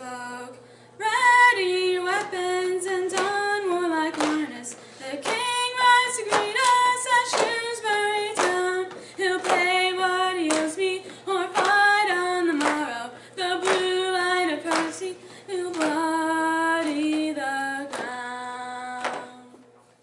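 A woman singing a narrative ballad solo and unaccompanied, in phrase after phrase, ending on a long held note near the end.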